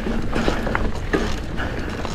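Mountain bike rolling down a dirt singletrack: a mechanical rattle and ticking from the chain and drivetrain, with several short sharp clicks, over a steady low rumble of tyre and wind noise.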